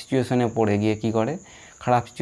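A man speaking in a lecture, with a faint steady high-pitched tone beneath his voice.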